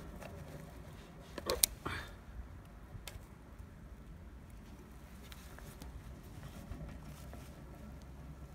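Faint clicks and handling noises from a digital multimeter as its rotary dial is turned and its test leads are moved to set up a short-circuit current reading, over a low steady background rumble. The clearest clicks come about one and a half seconds in and again about three seconds in.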